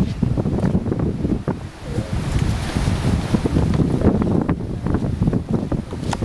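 Wind buffeting the camera's microphone: an uneven, gusting low rumble that eases briefly a little under two seconds in.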